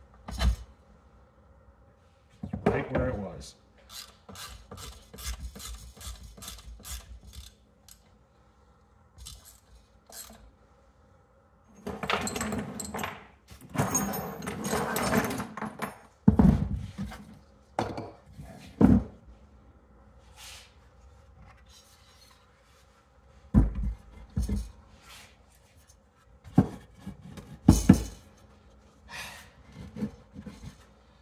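Workbench handling noises: a run of light clicks and rattles, then a few seconds of scraping and rubbing, then several sharp knocks as wooden boards and a small Briggs & Stratton engine block are set down on the bench.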